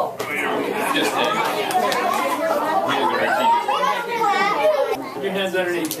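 Overlapping chatter of a group of young children talking and exclaiming at once, with no single voice standing out.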